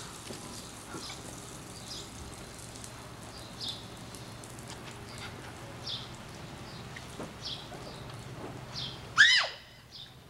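Steady hiss of water spraying from an oscillating lawn sprinkler, with short high chirps every second or two. Near the end a child lets out a loud, brief shriek.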